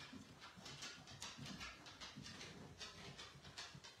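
Faint, irregular light ticks, about three a second, from a small paintbrush dabbing paint onto a wooden craft piece.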